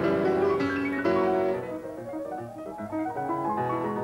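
Solo piano playing classical music: full, ringing chords for the first second and a half, a softer passage in the middle, and the playing growing fuller again near the end.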